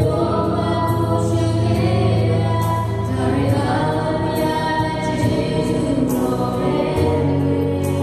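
A small mixed group of two women and a man singing a Christian hymn together through microphones, over an instrumental accompaniment with a steady beat.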